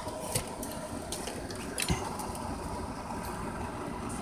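A few small clicks and knocks from the RC buggy's parts being handled as its shock is checked, the sharpest just before two seconds in, over a steady background hum.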